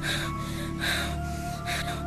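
Background film music of sustained tones over a low hum, with a woman taking about three sharp, gasping breaths.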